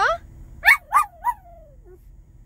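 Small dog making three short rising whining yips in quick succession, the last trailing off into a long falling whine, as if answering back.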